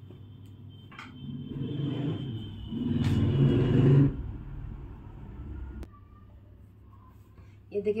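A low rumble that swells for about two seconds and then fades, over a steady low hum, with a single sharp click near the end.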